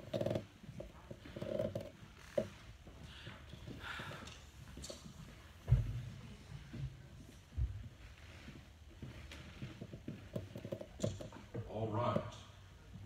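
Microphone handling noise: a handheld microphone being moved and set on its stand, with two dull thumps a couple of seconds apart near the middle, the first the loudest. Faint voices are heard in the room.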